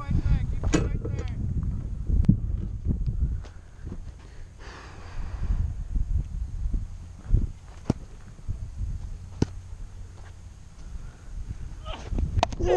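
Wind buffeting a body-worn camera's microphone, with a low rumble and handling knocks that ease off after about four seconds. A few isolated sharp clicks follow in the second half.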